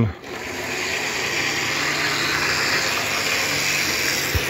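Lima H0-scale BR218 model diesel locomotive running along the layout track: a steady whirring rush of its small electric motor and wheels, with a faint low hum beneath.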